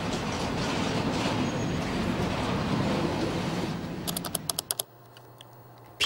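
Freight train rolling past, a steady rumble of wheels on the rails. About four seconds in it gives way to a quick run of computer keyboard keystrokes.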